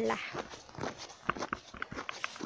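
Footsteps on snow: a quick, uneven series of steps, about three or four a second.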